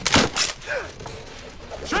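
Two sharp cracks of wooden rope-bridge planks splitting under a hoof, a film sound effect, loud and close together just after the start.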